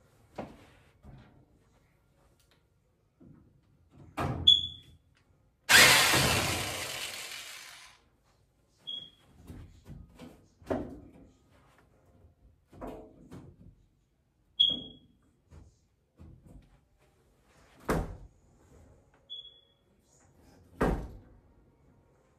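Knocks and thunks from handling a washing machine's sheet-metal front panel and cabinet, with one loud scraping rush about six seconds in that fades over two seconds, and a few short high squeaks between the knocks.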